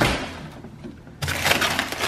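A chest freezer lid is opened with a sudden noise that fades away. From about a second in comes a dense crackling and crinkling: a stiff, frozen plastic bag of shad is pulled out of the frosty freezer.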